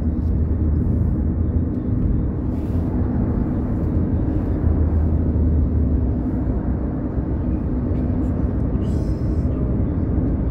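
Steady low engine and road rumble of a city bus driving, heard from inside the passenger cabin.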